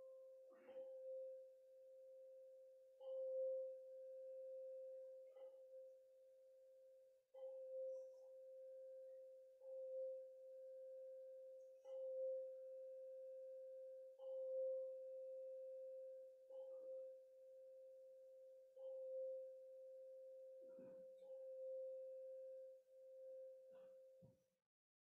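A single ringing tone held at one steady pitch, renewed by a light stroke about every two seconds, from a hand-held struck metal instrument.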